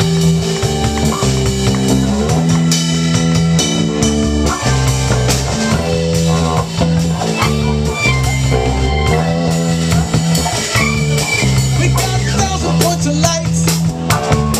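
Live rock band playing loudly: electric guitar chords ring over a drum kit, with the chords changing every second or so.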